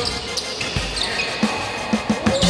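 A basketball being dribbled on a gym floor, with a few short bounces in the second half, over faint music.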